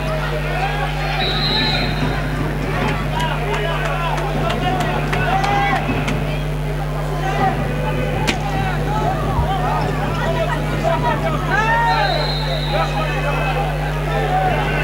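Live sound of an indoor handball game: shoes squeaking on the hardwood court over crowd chatter and a steady hum, with a sharp knock about eight seconds in.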